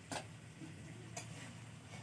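Faint steady background hum with two short, sharp clicks, one right at the start and one about a second later.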